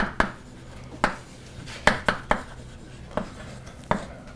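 Chalk writing on a blackboard: irregular sharp taps of the chalk against the board, some followed by a short scrape, as letters are written.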